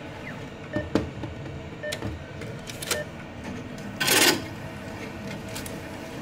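ATM cash dispenser: a few clicks with short beeps, then about four seconds in a loud, brief rustling swish as the stack of banknotes is pulled out of the dispenser slot.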